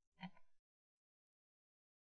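Near silence: a short faint sound in the first half-second, then the audio cuts to dead silence.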